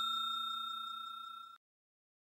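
Ringing tail of a bell-chime sound effect, a few steady tones fading away and stopping about one and a half seconds in.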